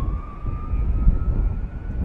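Outdoor field sound of a steady low rumble, with one faint tone that rises slowly in pitch throughout.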